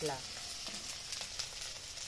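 Onion, ginger and garlic sizzling in mustard oil in a steel wok, a steady hiss with a few faint pops.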